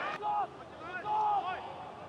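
Two short calls of a man's voice, fainter than the commentary around them, over a faint background hiss.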